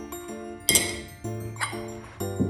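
Glass vases and glasses clinking together as a glass piece is set down among them: a sharp, ringing clink about two-thirds of a second in and a lighter one near the end. Background music plays under it.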